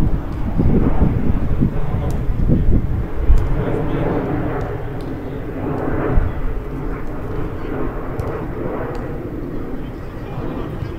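Outdoor football pitch ambience: players' distant voices over a steady low rumble. The rumble swells in the middle and slowly fades toward the end, with a few faint sharp clicks.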